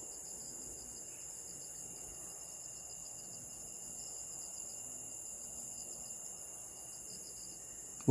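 Night insects, crickets, in a steady high-pitched chorus.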